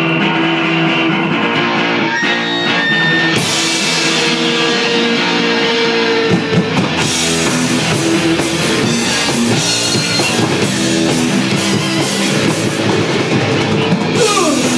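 Live rock band playing an instrumental passage on electric guitars, electric bass and drum kit. The cymbals come in about three seconds in, and the full drum beat about six seconds in.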